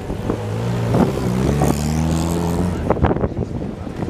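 A classic car's engine pulling away at low speed, its note rising about a second in, then holding steady before dying away just before three seconds in. Crowd voices follow near the end.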